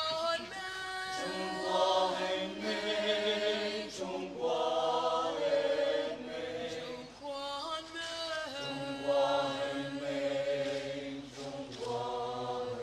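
Mixed choir of women, men and boys singing together in held, multi-part phrases, with short breaks between phrases about four and seven seconds in.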